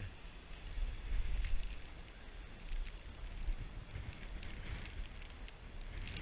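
Wind buffeting the camera microphone with a low rumble, with scattered light ticks and taps and a couple of faint high chirps.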